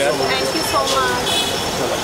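Several people's voices talking over one another, with steady vehicle noise underneath.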